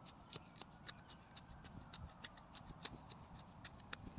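Garden soil being tilled and dug by hand: an irregular string of small, sharp scratches and clicks, several a second, as compost and manure are worked into the bed.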